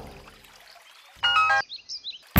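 Background music dying away, then a short bright chiming tone about a second in, followed by a few quick, high rising chirps.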